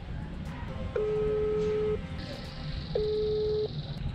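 Telephone ringback tone from a call placed on a tablet, heard through its speaker: a steady low tone about a second long, twice with about a second's gap between. The second tone is cut short as the call is picked up.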